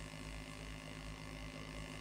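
Faint, steady electrical mains hum from a live PA sound system, with a low background hiss.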